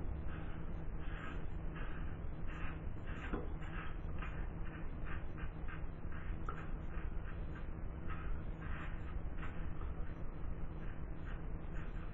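GEM Junior single-edge razor with a plastic handle scraping through lathered beard stubble in short repeated strokes, about two or three rasps a second. The cutting is plainly heard through the razor.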